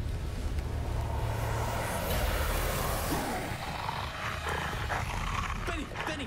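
A hissing, roar-like noise that swells to a peak about two seconds in and dies away by about three and a half seconds, followed by a few short vocal sounds.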